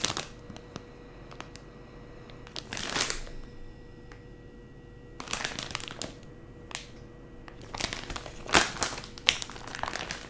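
Clear plastic packaging of a wax melt loaf crinkling in the hands as it is opened and handled, in a few short bursts with quiet gaps between.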